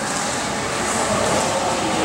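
Steady, echoing roar of an indoor swimming-pool hall: running water and air handling filling the room, with no distinct events.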